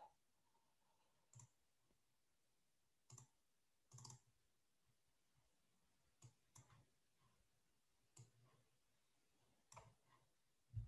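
Near silence broken by about seven faint, irregularly spaced clicks of a computer mouse.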